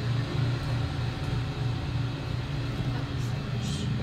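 Traction elevator car travelling between floors, heard from inside the car as a steady low hum.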